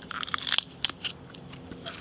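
Teeth biting into a raw sweet bamboo shoot: a quick run of crisp crunches in the first second, then a few fainter crunches as it is chewed.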